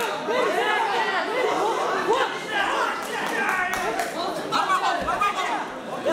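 Many voices shouting and talking over one another from spectators around an MMA cage during a fight, in a large hall.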